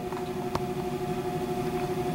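Room tone in a pause between sentences: a steady faint hum over background hiss, with a single faint click about half a second in.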